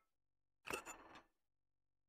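Lid of a small metal urn being pulled off: a single short scraping clink about two-thirds of a second in, lasting about half a second.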